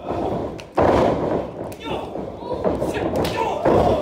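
Wrestling ring impacts: a loud thud of a body landing on the ring canvas about a second in, and more heavy impacts near the end, with crowd voices.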